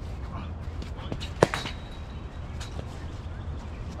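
A single sharp crack of a cricket ball hitting a bat, about a second and a half in, with a few fainter knocks around it over a steady low rumble.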